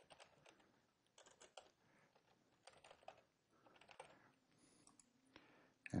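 Faint keystrokes on a computer keyboard, typed in several short runs with pauses between.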